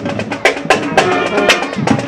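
A school marching band playing: rapid snare drum strokes, about five or six a second, under held notes from a tuba and other brass horns.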